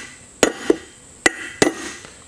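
Hammer striking a shaved-down old bearing race laid on a new race, driving the race down into a boat trailer wheel hub: four blows, the second lighter, each with a short metallic ring.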